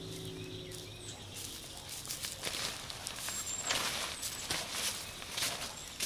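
Gazelle T4 tent's nylon fabric rustling in irregular bursts as it is handled and lifted, growing denser from about two seconds in, with footsteps on wood-chip mulch. A few faint, short high bird chirps.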